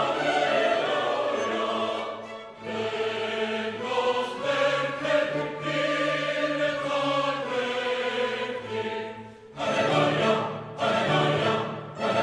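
Mixed choir singing with orchestral accompaniment, in sustained phrases with a short break about nine and a half seconds in.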